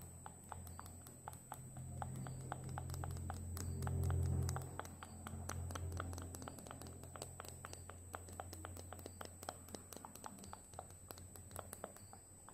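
Close-miked ASMR tapping: light, irregular clicks, about five a second, from hands and fingers working at the microphone, over a low rumble that swells about four seconds in. A faint steady high-pitched whine sits underneath.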